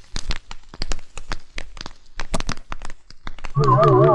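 Paper crinkling and crackling in a man's hands as irregular sharp rustles. About three and a half seconds in, eerie wavering electronic music with a low drone comes in loudly.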